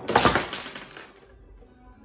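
Small pins of a homemade mini bowling alley clattering as they are knocked down: a sharp burst of clatter that dies away within about a second.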